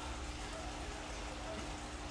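Steady rush of running water in a recirculating tilapia hatchery, with a faint constant hum underneath from its pumps and aerators.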